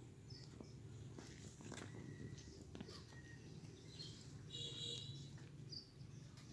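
Quiet outdoor background with a few short, high chirps of small birds, the clearest about four and a half seconds in, and some light clicks and taps of charcoal lumps being shifted in a metal tray.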